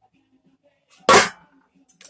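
An old metal Chevrolet hubcap is put down among other hubcaps, giving a single short clatter about a second in.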